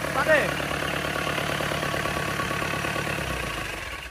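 FAW 498 four-cylinder turbo diesel engine idling steadily and very smoothly ("quá êm"). Near the end it winds down and stops as it is shut off after its test run.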